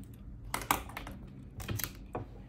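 A pen tip tapping and scratching on a notebook page as points are marked: a handful of short sharp taps, a few about half a second in and two more close together near the end.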